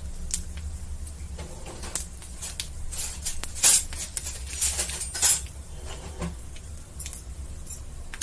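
Whole panch phoron spices and dried red chillies crackling and popping in hot ghee in a steel kadhai as they temper: scattered small crackles, with two louder pops around the middle. A steady low hum runs underneath.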